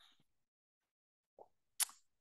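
A pause in a man's speech: near silence, then two brief mouth sounds near the end, the second a short sharp click, just before he speaks again.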